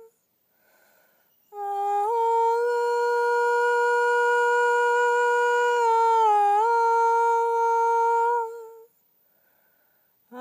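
A high voice holding one long sung or hummed note, with a slight step up in pitch soon after it starts and a brief dip a little past the middle. It fades out about a second before the end.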